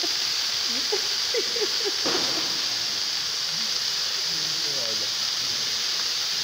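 CO2 fire extinguishers being emptied, the gas escaping in a steady, even hiss.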